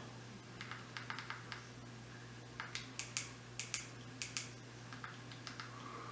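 Faint clicks of buttons being pressed one at a time on a Fire TV Stick remote, a scattered run of separate presses with the densest cluster in the middle.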